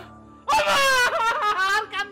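A man wailing loudly in one long, wavering cry that starts about half a second in. Background music plays underneath.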